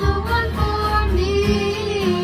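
Girls singing a pop song together over a strummed acoustic guitar, holding long sung notes.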